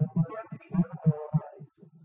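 A man speaking into a handheld microphone, with a short pause near the end.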